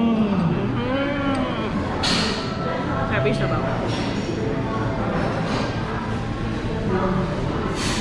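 Restaurant dining-room ambience: people's voices with a steady low hum, and a couple of brief clatters around two seconds in and near the end.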